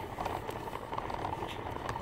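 Toy doll stroller rolling over asphalt, its frame and wheels rattling with small irregular clicks over a low rumble.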